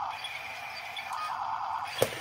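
Small electric motors and plastic gearboxes of a Huina remote-control toy excavator whining steadily as its boom swings, with a sharp knock at the very end.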